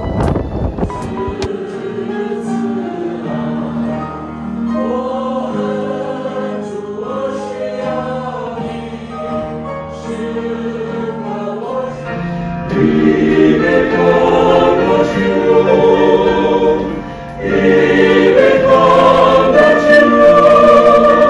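Church choir singing a hymn in several parts, growing louder and fuller a little past halfway. A brief rush of wind on the microphone opens it.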